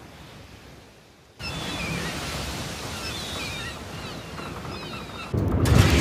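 Sea waves rushing and breaking, with gulls crying over them again and again, coming in loud about a second and a half in. Near the end a louder, deeper rush of a blazing furnace fire takes over.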